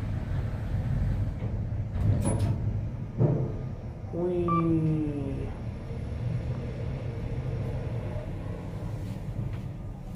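Kone EcoDisc gearless traction elevator car travelling down: a steady low rumble of the moving cab, with a click about two seconds in, a knock about three seconds in, and a brief falling tone a little past four seconds in.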